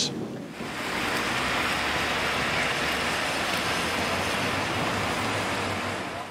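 Steady rain falling on a wet street, a continuous even hiss that sets in about half a second in.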